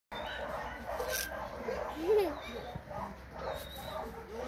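A dog vocalizing, with its loudest short call about two seconds in, among people's voices.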